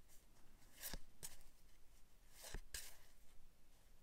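Faint handling of a small stack of cardstock game cards: a few brief soft scrapes and taps as the cards are brought together and squared, two close together about a second in and two more about halfway through.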